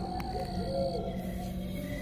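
An owl hooting once over a steady low drone of eerie background music.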